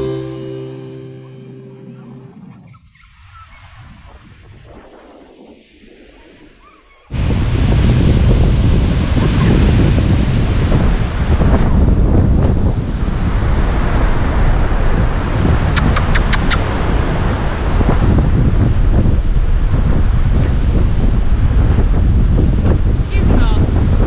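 Music fades out in the first couple of seconds. About seven seconds in, strong wind starts buffeting the camera microphone on an open beach, a loud, steady, low rumble that carries on, with surf under it.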